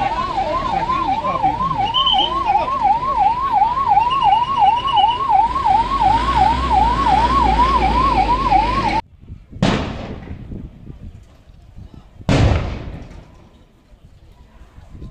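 Ambulance siren, a fast up-and-down warble of about three sweeps a second, over the low rumble of the van's engine; it cuts off suddenly about nine seconds in. Then come two loud bangs about three seconds apart, each fading away, as police fire tear gas.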